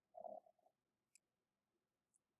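Near silence, with one faint, brief low sound a fraction of a second in.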